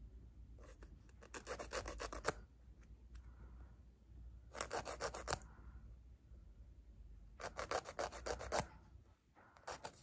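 Emery-board nail file rasped in quick back-and-forth strokes, in three bursts of about a second each.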